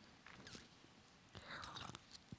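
Faint sips and mouth sounds of someone drinking from a paper cup, close on a headset microphone, the clearest in the second half; otherwise near silence.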